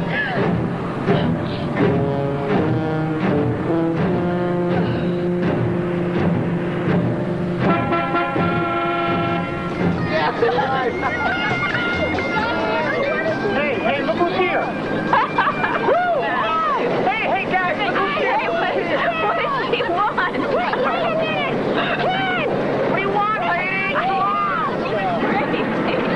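Tense film score holding sustained chords for about ten seconds, then gives way to a jumble of several voices shouting and hooting over one another without clear words.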